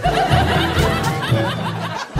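Laughter, a dense burst of several overlapping laughs like a laugh-track sound effect, over background music with a steady bass line.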